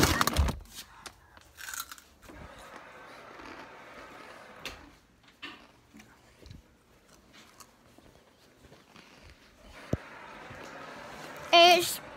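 Faint scattered rustling and clicking of close handling, opening with a loud burst of noise and with one sharp click about ten seconds in; a short wavering voice sounds near the end.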